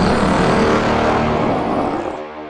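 A loud, rough yeti roar sound effect, rumbling and growling, then fading toward the end.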